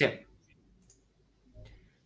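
A man's short spoken 'sì' at the very start, then near silence with a faint brief noise about one and a half seconds in.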